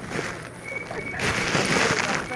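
Close rustling and crackling of a phone being handled: fingers rubbing over the microphone. A short burst comes at the start and a louder, denser one in the second half.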